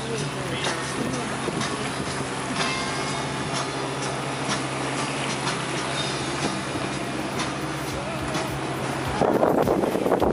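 Aboard a sailing yacht at sea: a steady low drone under the rush of wind and water. About nine seconds in, louder music starts over it.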